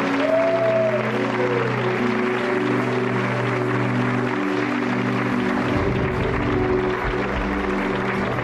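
Studio audience applauding over the show's break music, which holds steady sustained notes throughout.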